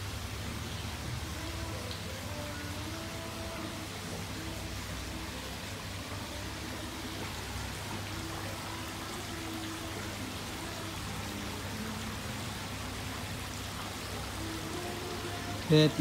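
Steady rush of running water with a low hum underneath and faint voices in the background; a man starts speaking at the very end.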